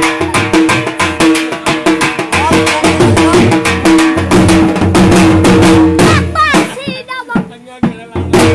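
Dhol drum played fast for jhumar dancing, dense rapid strokes over a steady held tone. About six seconds in, a wavering, gliding high sound rises over it, and the drumming thins out and drops away near the end.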